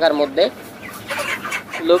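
A flock of broiler chickens clucking in their pen, faint calls filling a short gap in a man's speech.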